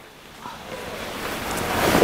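Rushing noise on the microphone, with no clear pitch, swelling steadily louder, like handling or cloth rubbing right against the mic.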